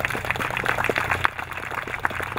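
Audience applauding: many hands clapping in a dense, irregular patter, over a steady low hum.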